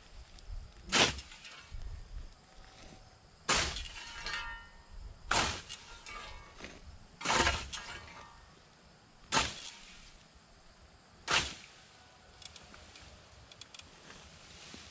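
Scythe blade swishing through a dense stand of ragweed, six sharp cutting strokes about two seconds apart, with rustling of the cut stalks between them.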